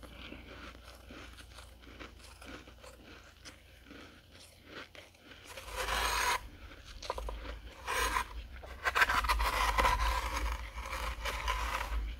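Soft crunching of a mouthful of dry, flaky freezer frost being chewed, faint at first. From about halfway in, a metal spoon scrapes and digs through a tray of powdery freezer frost in a few loud, crackly strokes.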